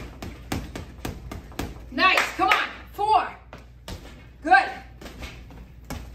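Boxing gloves striking a heavy punching bag in a fast run of punches, about four hits a second at first, then a few more spaced-out hits. Short bursts of voice come between the later hits.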